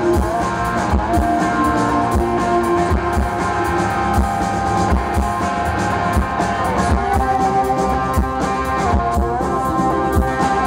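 Rock band playing live through a PA: electric guitar and drum kit with a steady beat, in an instrumental passage.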